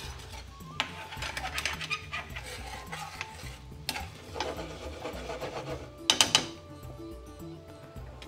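Metal ladle stirring and scraping through thick, creamy curry in an aluminium frying pan, in a run of soft scrapes with a sharper, louder scrape or clatter about six seconds in.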